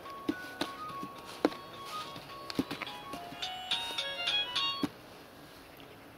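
A simple electronic melody of steady beeping notes stepping from pitch to pitch, like a ringtone or chime tune, ending about five seconds in. Several sharp knocks are scattered through it, the loudest about a second and a half in.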